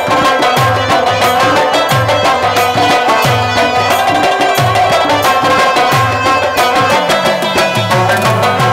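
Instrumental passage of Afghan music: an Afghan rubab plucking a busy melody over tabla, whose bass drum strokes slide downward in pitch at a steady pulse, with held tones underneath from a harmonium.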